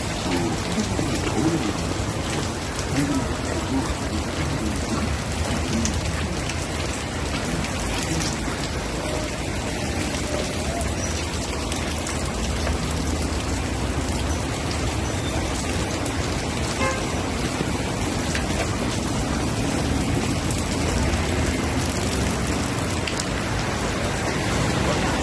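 Steady rain, an even hiss that goes on unbroken, with a few faint voices in the first few seconds.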